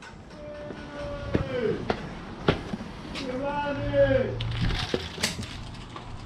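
A man's voice calling out from a distance in two long, drawn-out calls, answering a greeting, with a few sharp knocks between them.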